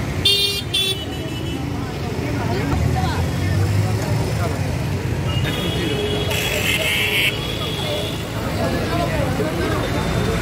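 Busy street traffic with motor vehicles honking: a short double horn toot right at the start, then a second, longer high-pitched blast about six to seven seconds in, over a steady rumble of engines and raised voices.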